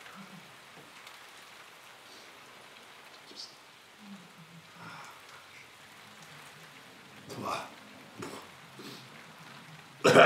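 Faint crackly rustling of a paper food wrapper as food is picked from it and eaten, with a brief louder sound about seven and a half seconds in.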